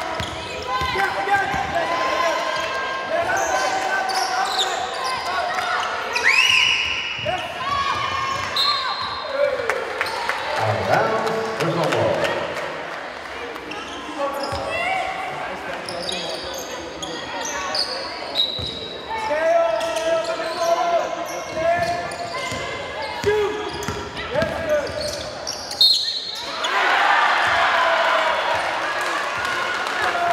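Live basketball game sounds in an echoing sports hall: a basketball bouncing on the wooden court, players and spectators calling out, and several short high squeaks of shoes on the floor.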